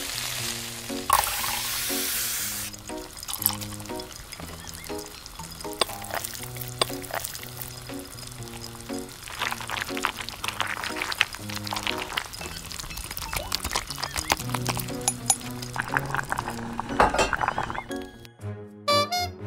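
Background music over miniature cooking: liquid sauce poured into a tiny steel wok of frying onion and garlic about a second in, then a tiny spoon clinking and scraping against the wok as the sauce is stirred.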